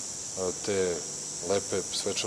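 A man speaking Serbian in two short phrases, over a steady high-pitched hiss.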